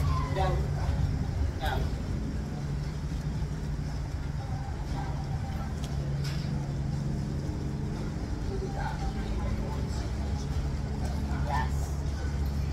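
A steady low mechanical hum like a running motor, with a few short, brief bits of voice.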